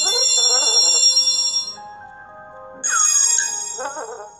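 Bright, twinkling chime sound effects from a cartoon storybook app, one at the start and a second about three seconds in with a falling slide, with a few soft musical notes between them.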